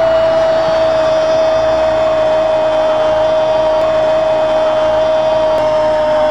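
A football commentator's long, drawn-out 'goool' cry for a penalty goal, one shouted note held without a break and sagging slightly in pitch, over stadium crowd noise.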